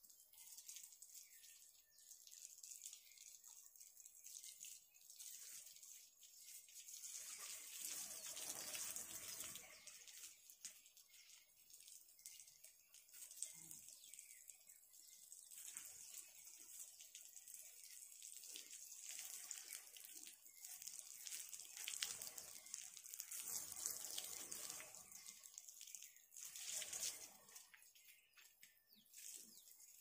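Water from a garden hose spraying and splashing onto a wet concrete floor: a soft, steady hiss that swells louder a few times as the jet is moved.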